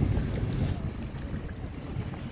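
Strong wind buffeting the microphone: a low, uneven noise.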